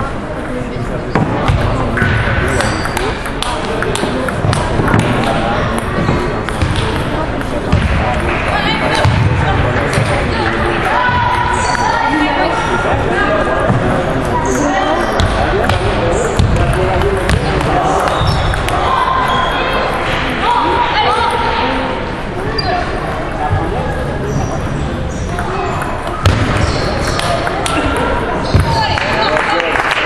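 Table tennis ball clicking back and forth between paddles and table in rallies, each hit a sharp tick, over continuous background chatter in a large hall.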